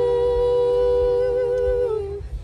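A female and a male singer holding one long note together in two-part harmony, steady in pitch, both cutting off just before the end.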